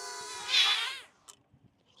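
DJI Flip drone's four propellers buzzing with a slightly wavering pitch as the drone sinks, overloaded with a 190-gram payload on a low battery and unable to hold altitude. The buzz swells briefly, then cuts off about a second in.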